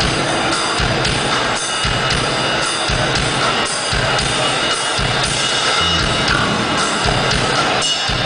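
Live rock band playing: electric guitars over a drum kit.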